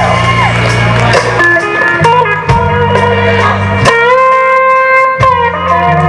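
Live blues-rock band: a lead electric guitar plays bent, sustained notes over bass guitar and drums. About four seconds in, one note is bent upward and held.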